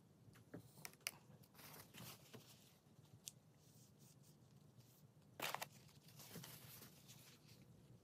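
Faint close handling sounds as a waterslide transfer is worked onto a model locomotive: a few light clicks and taps, soft rustles, and a short, louder crinkle of paper towel pressed against the transfer about five and a half seconds in.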